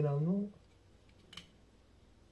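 A man's voice ends on a drawn-out, rising word about half a second in. A single short click follows about a second later, from a part being handled inside an open desktop PC case.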